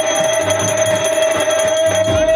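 A brass pooja hand bell rung rapidly and without pause during a camphor aarti, giving one steady, even ringing tone. Devotional music with a beat plays underneath.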